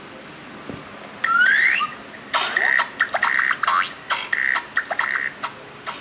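Logo sound effects: a quick rising whistle, then a rapid, uneven run of ringing, alarm-like bursts with a held high tone.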